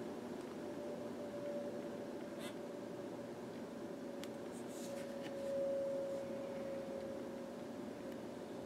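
Quiet room tone with a steady faint hum, and a few faint ticks of hands handling the phone.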